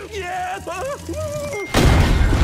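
A man's drawn-out cry, then about 1.7 s in a sudden loud burst of gunfire and booms that keeps going.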